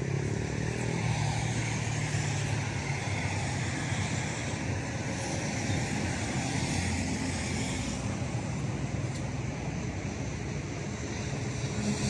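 Steady low rumble of motor traffic: a constant engine hum with road noise, with no single event standing out.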